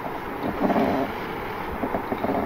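Steady background hiss of the recording's microphone, with no words.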